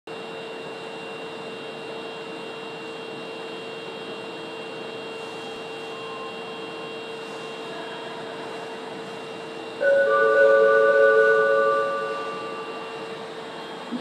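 Steady hum of a subway platform, then about ten seconds in a loud electronic chime of several held tones that fades out over a couple of seconds: the platform's train-approach melody warning that a train is arriving.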